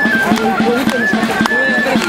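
Basque folk dance music: a high melody of held notes that step from pitch to pitch over a steady low drone. Children's voices chatter over it, and short quick knocks come from the dancers' feet on the gravel.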